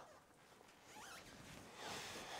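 Near silence: faint room tone, with a faint rustle of noise rising toward the end.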